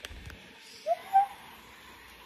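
A young woman's short, high, rising excited cry, like a brief hoot, about a second in, amid quiet.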